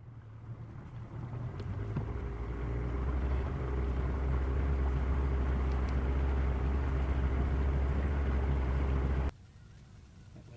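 Outboard motor running a fishing boat along at speed: a steady low engine drone with rushing water and wind noise. It grows louder over the first few seconds and cuts off abruptly near the end.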